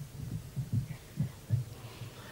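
A series of soft, irregularly spaced low thumps, about five in two seconds.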